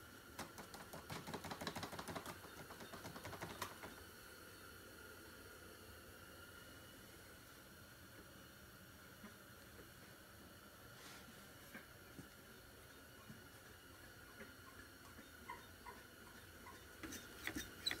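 Faint rustling and small rapid clicks for the first four seconds or so, then near silence: faint steady room hum with an occasional light tick.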